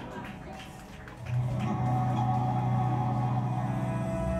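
Live rock band playing a quiet, droning passage. A low sustained note comes in about a second in and holds, with softer held notes above it.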